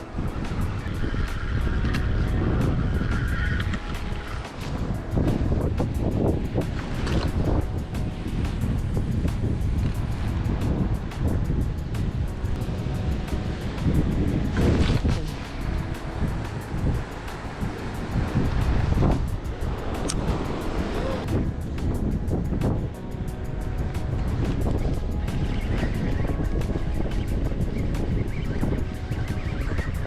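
Wind buffeting the microphone in an uneven rush, over the wash of surf on the rocks below.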